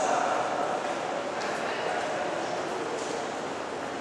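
Echoing ambience of an underground metro concourse: a steady wash of distant, indistinct voices.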